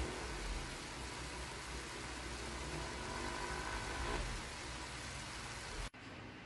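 Beef, carrots and cauliflower in oyster sauce and beef broth sizzling in a nonstick frying pan: a steady hiss that cuts off just before the end.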